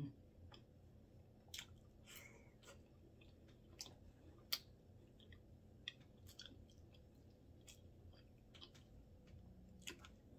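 Faint close-up chewing and mouth sounds, with small sharp clicks scattered irregularly through it.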